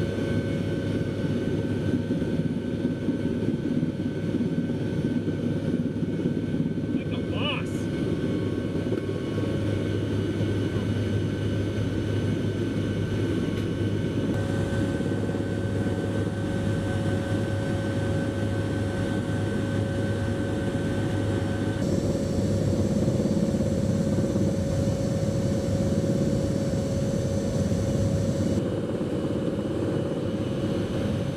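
Steady drone of an HC-130J's four turboprop engines and propellers heard inside the cabin: a constant low hum with several steady whining tones on top. The mix of tones shifts twice.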